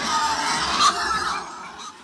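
Pigs squealing, loudest a little under a second in and fading after about a second and a half.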